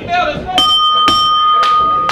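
Wrestling ring bell struck about three times, roughly twice a second, each strike ringing on with a clear metallic tone: the bell signalling the start of a match.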